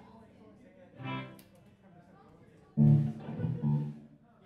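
Amplified electric guitar and bass guitar noodling between songs: a single ringing guitar note about a second in, then a louder burst of a few bass and guitar notes near the end.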